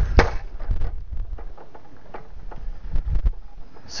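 A 220-pound test weight caught by a shock-absorbing fall-arrest lanyard: a sharp snap just after the start as the lanyard takes the load while the shock-absorbing material inside rips and tears out to slow the fall, then a few faint knocks as the weight settles.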